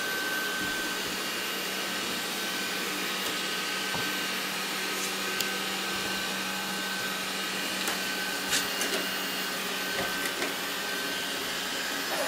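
Robot vacuum cleaner running steadily, its motor and suction fan giving an even whir with a faint steady whine, and a few light ticks in the second half.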